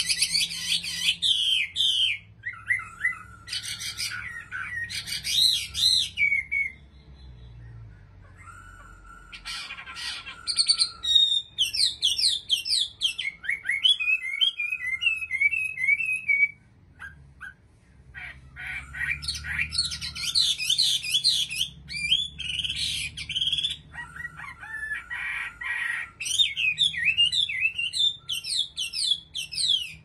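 Chinese hwamei (Garrulax canorus) singing: long, varied phrases of rapid whistled notes, slurs and repeated trills. The song pauses briefly about a quarter of the way in and again just past halfway.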